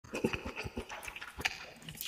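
Curly instant noodles being slurped and chewed close to the microphone: a quick, irregular run of short smacks and sucks.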